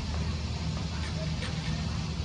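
A steady low engine rumble, with faint voices in the background.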